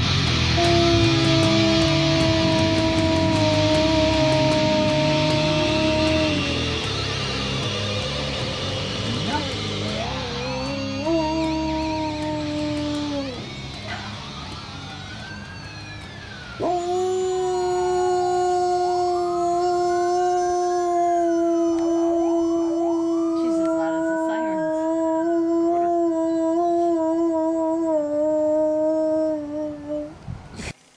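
A dog howling: rising and falling howls over a long, steady held note from about halfway through to the end. Rock music fades out over the first several seconds.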